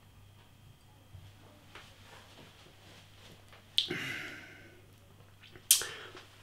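A man drinking beer from a pint glass. Mostly quiet, then about four seconds in a sharp mouth click followed by a breathy exhale that fades over about a second, and another sharp lip smack near the end.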